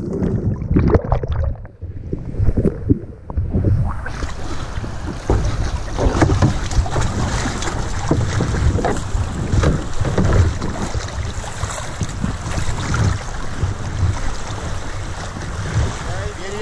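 River current splashing and rushing against a canoe hull right at the microphone, with wind buffeting the microphone in low rumbling gusts. It starts as scattered splashes and becomes a continuous wash about four seconds in.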